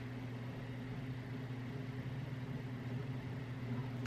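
A steady low hum with a faint hiss over it, unchanging throughout: background room tone with no distinct handling sounds.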